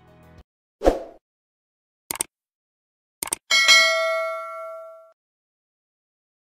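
Subscribe-button animation sound effects: a soft thump, a click, a quick double click, then a bell ding that rings out and fades over about a second and a half.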